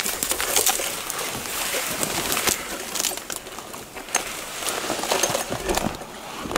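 Dry twigs and brush crackling and snapping against clothing and a backpack as someone pushes through dense forest undergrowth: a steady run of quick, irregular crackles and rustles.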